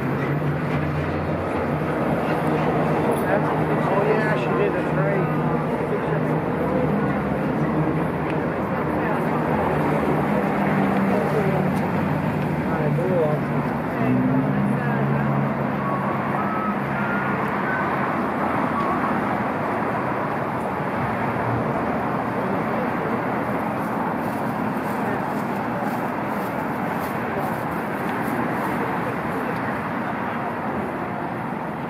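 Street traffic noise from passing vehicles, with a low, steady engine hum for roughly the first half that fades about halfway through, and faint, indistinct voices of passers-by.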